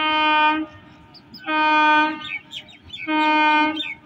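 Electric multiple unit local train's horn sounding three short blasts of equal length at one steady pitch, about a second and a half apart.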